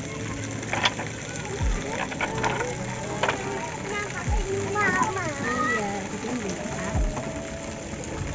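Outdoor swimming pool ambience: voices and children's calls from around the pool, water splashing, and a few sharp knocks.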